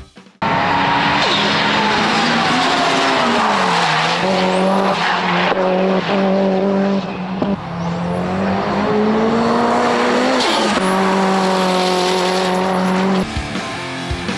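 Tuned Mitsubishi Lancer Evolution driven hard on a race circuit: the engine runs at high revs with a strong steady note, dipping in pitch and climbing back three times, with tyres squealing through the corners.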